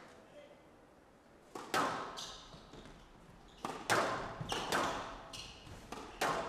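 Squash rally: the ball is struck by the rackets and smacks off the court walls, making sharp hits about a second apart starting a second and a half in, with short high squeaks of shoes on the court floor between them.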